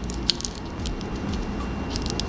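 Light handling noise of makeup brushes and their plastic sleeves: a few faint clicks and crinkles over a low steady hum.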